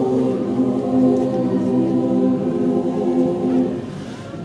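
Mixed choir of men's and women's voices singing long, held chords, with a phrase ending in a short dip near the end.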